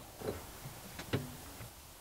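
Quiet background hiss with a couple of faint clicks, the clearest a little over a second in.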